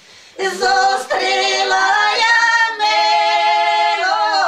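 Three elderly women singing a traditional village folk song a cappella in long held notes. A new phrase begins with an upward slide about half a second in, after a short breath, and there is a brief break for breath near three seconds.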